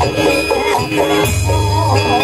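Live music from a burok troupe's band: drums and percussion with a gliding melodic line over repeated low bass notes.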